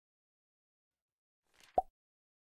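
Silence, then near the end a short swish and one sharp hit: an animation sound effect as the end-card title appears.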